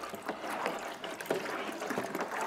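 A pink milk drink being stirred by hand in a plastic cooler, making an irregular clatter of knocks and scrapes against the cooler, while milk pours into it from a jug.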